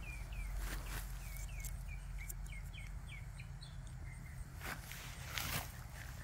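A small bird chirping: a quick run of short, falling chirps, about three a second, that stops about four seconds in. A few soft rustles and clicks of hands working loose garden soil come through over a low, steady rumble.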